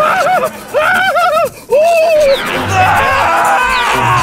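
Wordless vocal wailing: a series of short cries, each rising and falling in pitch, with two brief breaks, over background music.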